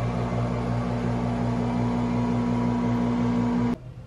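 Steady hum of a ventilation fan motor in a small tiled bathroom, cutting off suddenly near the end.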